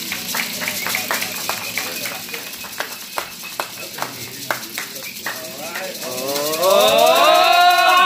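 Prize wheel's clicker ticking against the pegs as the wheel spins, the ticks spacing out as it slows to a stop. Near the end a voice lets out a long, drawn-out exclamation that rises and then falls in pitch, louder than the ticking.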